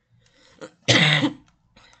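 A single loud cough from a person, about a second in.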